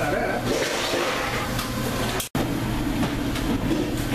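Steady hum and rumble of kitchen machinery, with indistinct voices underneath. The sound drops out abruptly for an instant a little over two seconds in.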